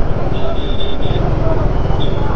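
Motorcycle engine running at low speed with heavy rumble on the camera microphone, and a thin high tone that comes and goes.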